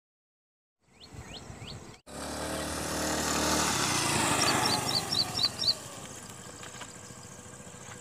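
Small motor scooter riding past: its engine grows louder to a peak midway, then drops in pitch and fades as it moves away. A few bird chirps near the start, and a quick run of short high chirps at the loudest part of the pass.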